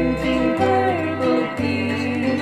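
A children's song with acoustic guitar accompaniment and a sung melody.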